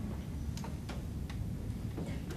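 Four light, evenly spaced clicks, a little over two a second, starting about half a second in, over a low steady hum.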